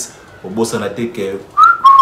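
A man whistles one short note with his lips, starting a little high and settling slightly lower, held for about half a second near the end.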